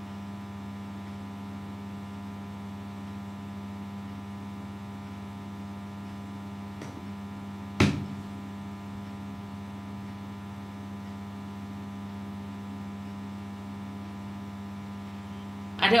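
Steady electrical mains hum, a low buzz with many even overtones, and a single sharp tap about eight seconds in.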